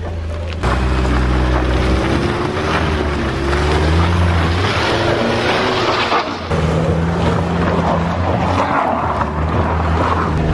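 A small road car's engine is revving under load as it climbs a slippery mud trail, with tyre noise and wind buffeting the microphone held outside the window. The engine surges louder about half a second in and its pitch changes several times as the throttle varies.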